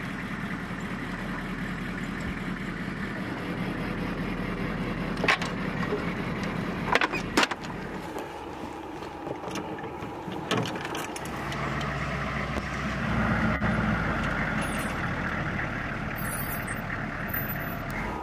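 Steel sling-load chains clinking a few sharp times as they are handled on a vehicle's hood, over a steady low rumble that swells for a couple of seconds past the middle.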